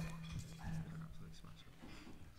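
Faint, indistinct voices over a steady low hum; the hum cuts out near the end.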